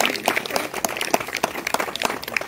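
A small audience clapping: many quick, uneven hand claps.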